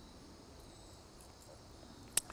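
Near silence: faint outdoor background with a steady, high-pitched insect trill, like crickets.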